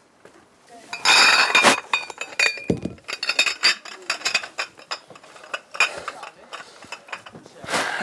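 Glass beer bottles clinking and knocking together as they are taken from a beer crate and gathered up in the arms: many quick clinks, loudest and most ringing about a second in.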